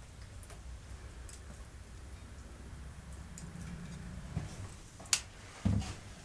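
Faint ticks of pliers and wires being handled at a 12 V switch panel, with a sharper click about five seconds in and a short dull thump just after it, over a low steady hum.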